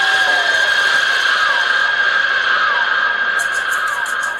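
Horror sound effect from the dance's playback track over the stage speakers: a loud, sustained shrill tone over a hiss, with short falling squeals. Fast, even ticking joins about three seconds in.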